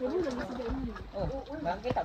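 A person's voice sliding up and down in pitch with no clear words, lower at first, then in higher, arching sounds.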